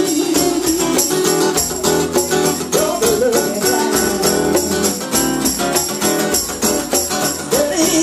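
Live band playing a song: a woman singing lead into a microphone over strummed acoustic guitar and a drum kit keeping a steady beat with cymbals.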